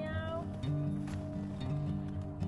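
Background music with steady held notes over a moving bass line, opening with a short falling, voice-like glide.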